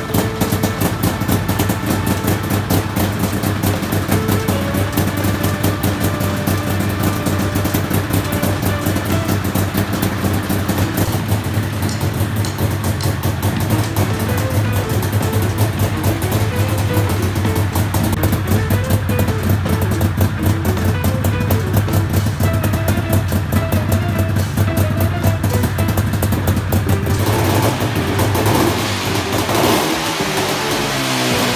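Homemade helicopter's small petrol engine running steadily, with a fast, even pulsing. Background music plays over it, and the engine sound changes near the end.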